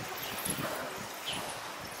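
Quiet street background noise: a low, even hiss with a few faint, brief sounds and no one thing standing out.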